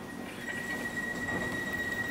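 DLR light-rail train's wheels squealing on the track in one steady high-pitched tone that sets in about half a second in, over the low rumble of the moving carriage.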